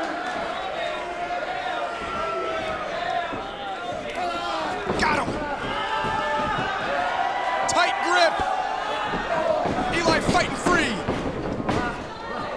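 A wrestling arena crowd shouting and yelling, with several sharp thuds from the ring about five, eight and ten seconds in.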